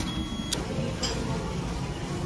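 Steady low background rumble of a busy indoor arcade, with a sharp click about half a second in and a fainter click about a second in.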